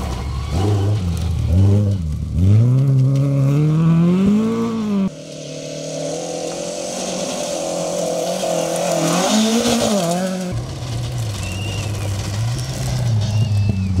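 Ford Escort Mk2 rally cars driven hard on a gravel stage: the engine note climbs steeply as the car accelerates out of a corner, with gravel spraying off the tyres. About five seconds in it cuts to another car holding a high, steady engine note over the hiss of gravel, and near the end the engine rises and falls again through the revs.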